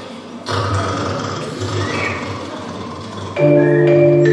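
Murmur of an audience in a hall. About three and a half seconds in, loud playback dance music cuts in over the hall's speakers, opening with held, chiming notes in several pitches.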